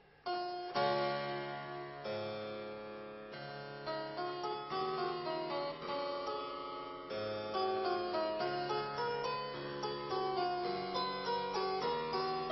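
Harpsichord played: a passage of plucked chords and melody over a held bass, starting about a quarter second in.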